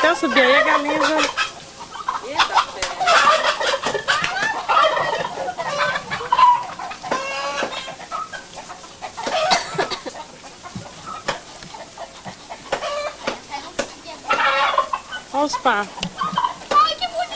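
Poultry calling repeatedly, in clusters of short, wavering cries with some sharp clicks, loudest near the start and near the end.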